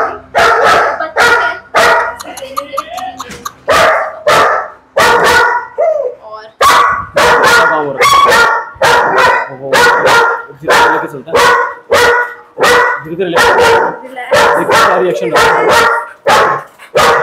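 A dog barking loudly and repeatedly, about two barks a second, with a short lull a few seconds in.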